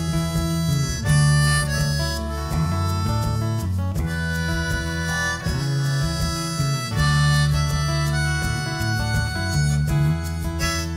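Harmonica playing an instrumental solo over a live band of acoustic guitars, bass guitar and drums, its melody in held notes that change about every second.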